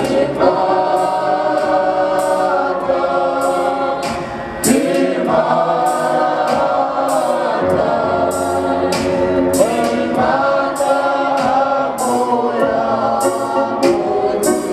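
A gospel worship team singing together in harmony into microphones, holding long notes, over a steady beat.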